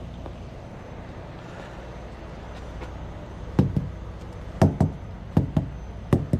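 Steady low hum of an idling truck, then from about halfway through a run of sharp knocks in quick pairs, about one pair a second.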